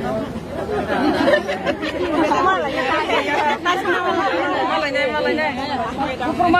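Chatter: several people talking at once, voices overlapping.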